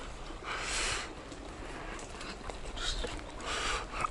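A person breathing audibly in three short breathy puffs over a steady low rumble, with a few faint clicks.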